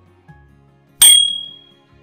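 A single bright bell ding about a second in, ringing out for under a second over soft background music. It is the notification-bell sound effect of an on-screen subscribe-button animation.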